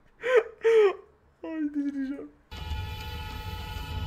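A car horn held down continuously in city traffic, a steady, unbroken blare over a low traffic rumble, starting suddenly a little past halfway through. Before it comes brief laughter and a short vocal sound.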